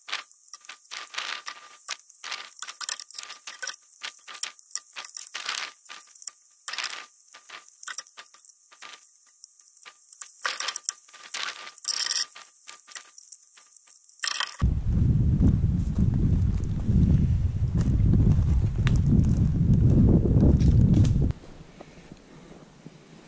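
Dense crackling and rustling of tent nylon and camp gear being handled and packed, many quick sharp clicks. About two thirds of the way in this gives way to a loud, wavering low rumble on the microphone, which stops shortly before the end.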